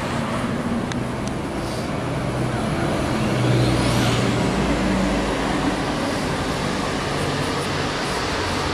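Road traffic: a motor vehicle drives past, growing louder to a peak about halfway through and then fading, over a steady traffic background.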